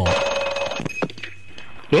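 A telephone bell ringing once, a rapid rattling ring that is loud for about a second and then dies away, before the call is answered.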